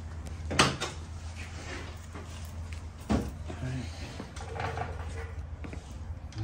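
Two sharp knocks about two and a half seconds apart over a steady low hum.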